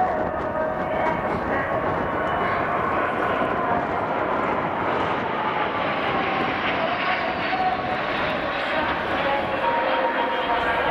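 Jet engines of a formation of display jets flying past, a steady rushing noise with a faint whine that falls slowly in pitch around the middle.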